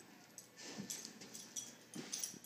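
A dog at play with a kitten on carpet: a short, noisy dog sound lasting about a second, starting about half a second in, with a few light knocks of movement near the end.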